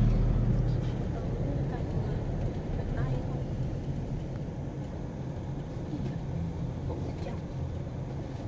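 Car engine and road noise heard inside the cabin as it drives in city traffic: a low rumble that is loudest in the first second, then settles to a steady drone.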